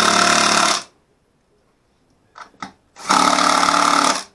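Cordless power driver running in two bursts of about a second each, one at the start and one about three seconds in, tightening nuts onto carriage bolts through a steel bracket. A couple of faint knocks come between the bursts.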